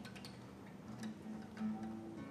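Oud played softly: a few separate plucked notes in its low register, spaced apart, as the quiet opening of an instrumental introduction.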